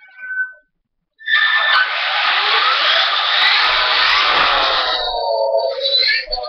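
Traxxas E-Maxx monster truck with a Mamba Monster brushless motor system running flat out: a loud whine and drivetrain noise that starts suddenly a little over a second in, the whine gliding up in pitch, then falling tones as it slows near the end.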